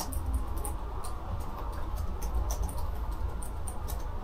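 Low rumble of movement on a clip-on microphone, with faint irregular ticks and rustles from sheets of paper being handled.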